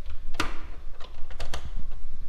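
A few sharp metallic clicks and taps from the aluminium engine cowling being handled and closed, the last two close together, over a steady low rumble.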